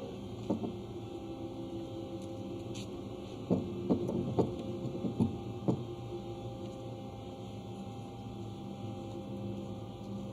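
Steady machinery hum with several fixed tones underneath. One sharp knock comes about half a second in, and a run of five more sharp knocks falls between about three and a half and six seconds in.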